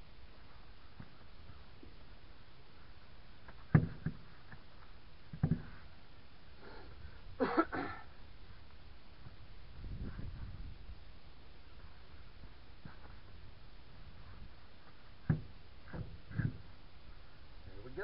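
Scattered short knocks and thumps as a heavy backhoe tire on its steel rim is shifted and pushed onto the wheel hub, the loudest a few seconds apart. About seven and a half seconds in there is a brief burst of a man's voice, and a soft low rumble follows a couple of seconds later.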